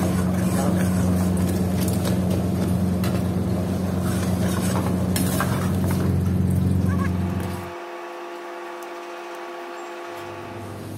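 Steady low mechanical hum of kitchen machinery, with a few faint clinks of a steel ladle against the pan and bowl. About three-quarters of the way through the hum cuts off suddenly and soft background music takes over.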